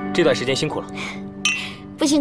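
Two wine glasses clinked together in a toast: a single bright clink about a second and a half in, ringing briefly.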